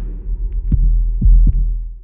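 Deep, heartbeat-like drum thuds from a closing logo sting, three of them in the second half over a low rumble, fading out at the end.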